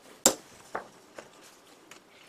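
A sharp knock about a quarter second in, then three fainter taps: a plaster ceramic mold being handled and knocked against the bench.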